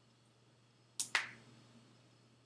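Two sharp computer-keyboard keystroke clicks in quick succession about a second in, the second louder with a short fading tail, over a faint steady hum.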